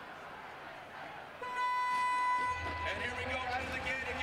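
Race start horn for an ice cross downhill heat: one steady, buzzy electronic tone lasting about a second and a half, signalling the gates to open. A low rumble comes in as the tone ends.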